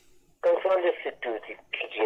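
A caller's voice heard over a telephone line, thin and narrow-sounding, starting about half a second in after a brief pause.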